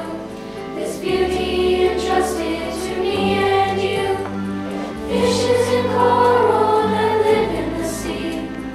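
Middle-school chorus singing in unison with held bass notes under the voices that change every second or two.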